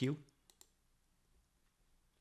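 The end of a spoken word, then two quick clicks close together from the computer controls, advancing the presentation slide to its next line. Faint room tone follows.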